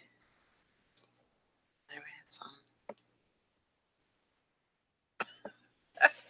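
Near silence, broken by brief quiet muttering about two seconds in and again just before the end, with a few small clicks.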